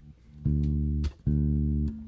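Electric bass guitar playing two sustained notes, the first about half a second in and the second just after a second in, each held for about two-thirds of a second and then cut off sharply.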